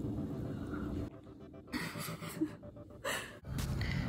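A person drinking a shot of water to wash down pills, with breathing and a short gasp. The sound drops out briefly twice.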